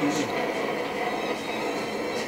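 Distant fireworks display: a steady din of many shells bursting together, with faint crackles on top.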